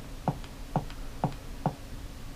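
A run of short clicks, about two a second, as a Kodi menu list is stepped down one item at a time with a Fire TV Stick remote.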